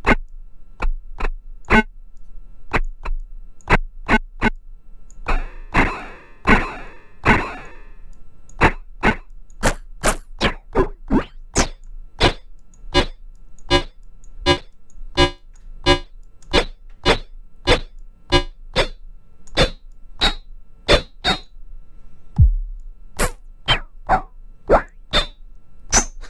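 Synthesized drum voice from an Axoloti Core patch: a short sine-based chirp hit triggered over and over at roughly two a second, its pitch and tone shifting as the sine wave's settings are changed. A low steady hum runs underneath.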